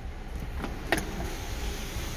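Power sunroof of a 2017 Buick Regal opening: a steady motor whir with one sharp click about a second in, over the low rumble of the idling engine.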